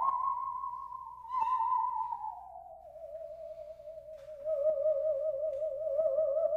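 Bowed musical saw playing a slow melody: a single pure, singing tone that slides down from high to lower and then wavers with a wide vibrato.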